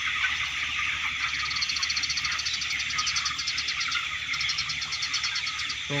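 A large flock of broiler chickens in a poultry shed, cheeping continuously as a dense din of many overlapping high peeps. A rapid, high, evenly pulsed trill sounds twice over it, from about a second in and again near the end.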